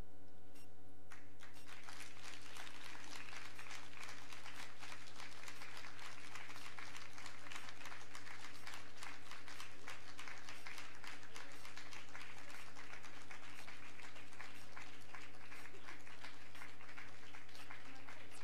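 Audience applauding after a live spoken-word and music performance, starting about a second in and holding steady, over a steady low hum or drone from the stage.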